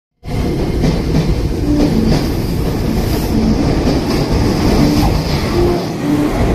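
Electric train running through a station at speed: a loud, steady rush and rumble of wheels on the rails, with a few faint clicks over the rail joints.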